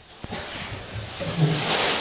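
Water splashing and rushing in a bathtub full of ice water as a man gets in. There is a short knock near the start, then a steady rushing that builds from about a second in.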